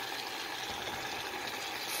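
Baby artichokes cooking in a little water and olive oil in a pan on the stove, giving a steady, even hiss as the provola slices on top melt.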